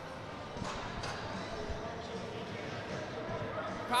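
Faint ice-rink ambience during a break in play: a low murmur of distant voices echoing in the arena, with a few light knocks.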